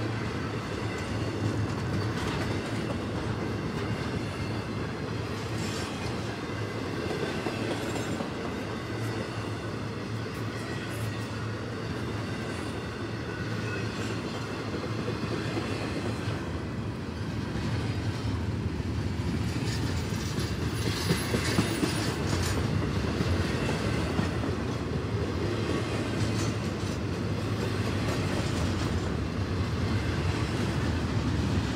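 Double-stack intermodal freight train's well cars rolling past close by: a steady rumble of steel wheels on rail, with a faint high wheel squeal over it. It grows a little louder about halfway through, with a few sharp clanks soon after.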